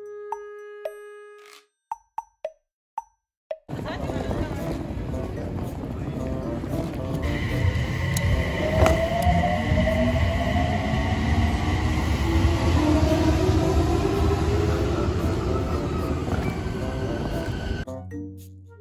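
A few short popping and chiming sound effects, then an electric train running up to speed: a loud rumble with its motor whine rising steadily in pitch, joined by a steady high tone about seven seconds in.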